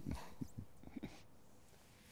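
Faint room tone of a quiet room, opening with a soft spoken 'uh' and a few faint short sounds in the first second, then growing quieter.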